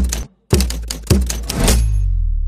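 Sound effects for an animated title card: a quick run of sharp, glitchy hits about half a second apart, each with a deep bass thud. The last one, about a second and a half in, rings on as a low boom that fades slowly.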